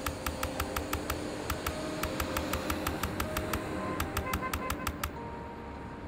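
Typewriter keystroke sound effect: rapid clicks in two quick runs, the second near the end, as a title is typed out letter by letter, over a soft music pad with held tones.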